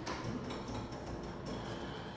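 Overhead sectional garage door rolling open, a steady rumble with light rattles from the rollers running in their tracks.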